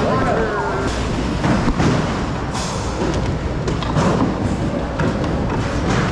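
Indistinct voices over background music, with scattered knocks and thuds.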